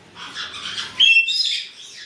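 A caique parrot gives one loud, shrill squawk about a second in, which breaks into a rougher, raspier note; fainter bird chatter comes before it.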